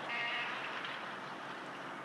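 Steady street-traffic and car-running noise, with a short nasal pitched tone in the first half second.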